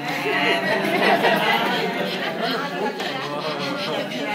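Several people talking at once: overlapping chatter with no single voice standing out.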